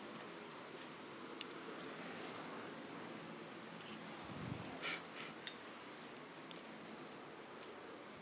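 Quiet room with a faint steady hiss, soft rustling and a few light clicks, and a dull low thump about four and a half seconds in.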